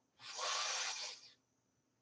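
A woman breathing in audibly through the nose: one slow, hissy inhale lasting about a second. It is a deliberate yoga breath taken on the cue to inhale.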